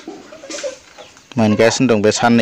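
Chickens clucking softly. A little over halfway through, a person's voice starts speaking loudly over them.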